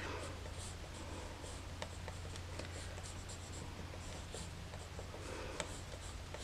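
Pencil drawing on sketchbook paper: a run of faint, irregular scratchy strokes.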